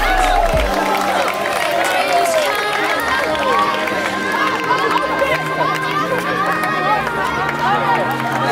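Many children's voices shouting and calling out at once, over background music with a low bass line that changes notes every second or two.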